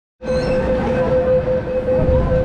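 An MTR Disneyland Resort Line train standing at the platform: a steady, slightly wavering tone over a low rumble, starting just after the opening.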